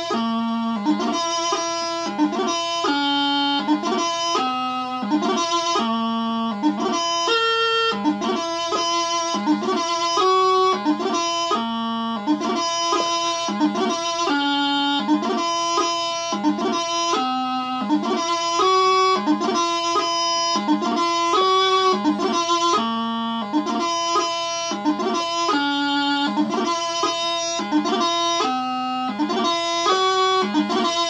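Bagpipe practice chanter playing the doubling variation of a piobaireachd: a steady line of single held notes stepping up and down, each change marked by quick grace notes, with no drones beneath.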